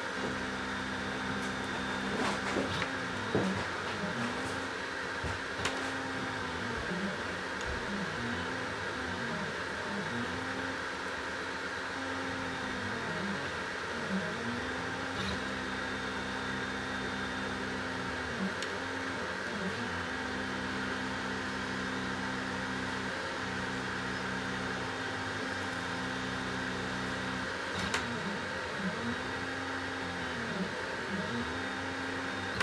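Stepper motors of a gantry laser engraver whining as they drive the laser head back and forth across the work: a low steady tone that sweeps down and back up each time the head slows and reverses. Under it runs the steady hum of the diode laser module's cooling fan, with a few faint clicks.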